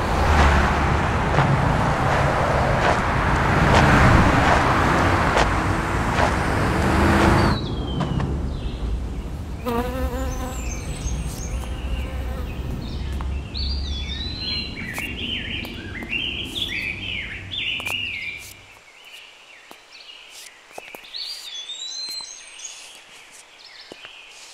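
Loud rushing noise with a low rumble that cuts off suddenly about a third of the way in, giving way to birds chirping in short repeated rising and falling calls. The low rumble underneath drops away about three quarters of the way through, leaving the chirps over a faint background.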